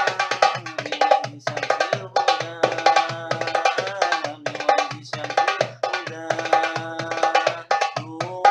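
Darbuka played with both hands in a fast, even rhythm: deep low strokes in the middle of the head set among quick, sharp strokes near the rim. A sustained pitched line that bends in pitch runs underneath, with a few brief breaks in the playing.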